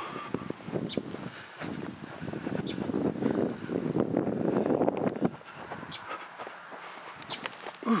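Footsteps and rustling handling noise with wind on the microphone, dense for about five seconds and then thinner, with a few faint sharp ticks.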